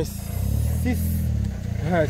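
A vehicle engine idling steadily, a low, even hum under a pause in talk.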